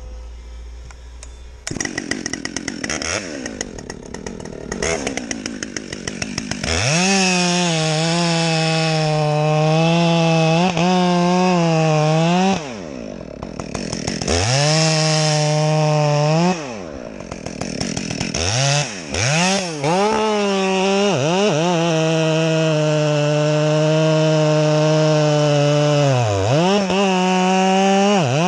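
Husqvarna 572 XP two-stroke chainsaw with a 28-inch bar and full-complement chain cutting noble fir. It idles briefly at first, then runs at full throttle in the cut, its pitch sagging under load. It drops back to a lower note twice in the middle and gives a few quick revs before settling into a long steady cut.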